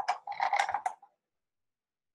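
Paintbrush clinking and rattling against its container, with a few sharp clicks, stopping about a second in.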